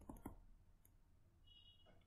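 Near silence with a few faint clicks in the first half second, made while handwriting on a digital whiteboard.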